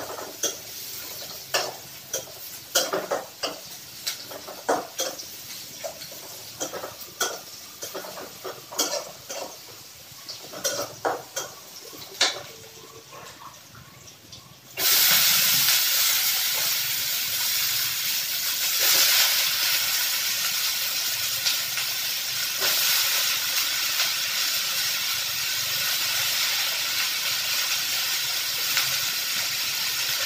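A metal spoon stirring and clinking against an iron kadai in irregular taps, then, about halfway through, a loud sizzling hiss starts suddenly as food hits the hot pan, and it keeps going steadily with steam rising.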